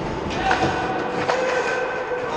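Ice hockey play: skate blades scraping and squealing on the ice, with a few sharp clicks of sticks or puck.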